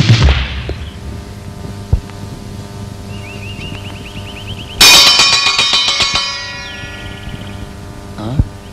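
A punch sound effect lands right at the start. High, quick chirps follow, then about five seconds in a loud metallic clang rings out and dies away over about two seconds.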